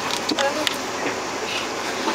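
Hands fiddling with a knotted bus seatbelt, its metal buckle giving a couple of short clicks, over the steady background noise of the bus interior with faint voices.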